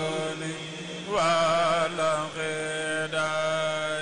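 Group of men chanting Mouride religious poems (khassaides) into microphones, long drawn-out notes with a wavering melody over a low note held steadily beneath. A voice swells in strongly about a second in.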